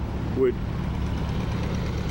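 A heavy machinery engine running steadily on a construction site, a constant low rumble, with one spoken word about half a second in.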